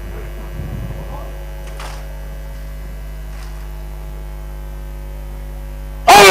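Steady electrical mains hum, a low buzz with evenly spaced overtones, as from the sound system between announcements. A few faint short sounds come through in the first two seconds.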